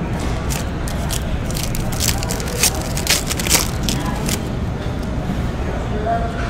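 Trading card pack being opened and the cards handled: a run of sharp crinkles and clicks from the wrapper and cards, over a steady low hum.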